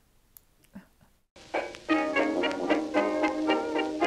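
Near silence for about a second, then upbeat background music starts and plays on with a bouncy rhythm of many pitched notes.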